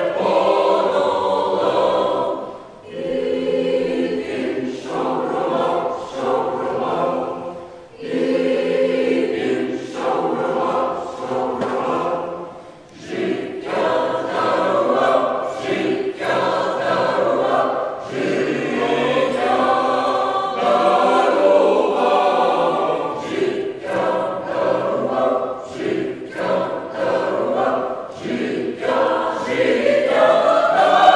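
Choir singing a Ukrainian song in several parts, in long phrases with brief breaks between them.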